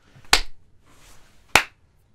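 Two sharp single hand claps about a second apart, the second slightly louder.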